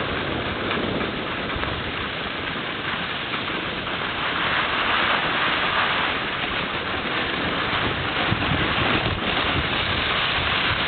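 Steady rushing noise while sliding down a groomed ski slope: wind buffeting the microphone together with the scrape of gliding over snow, a little louder and hissier from about halfway through.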